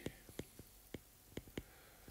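Faint, irregular light ticks of a stylus nib tapping and dragging on a tablet's glass screen while writing by hand.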